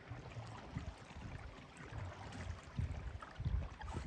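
Faint water sounds from canoes being paddled on calm water, with soft, irregular low thumps.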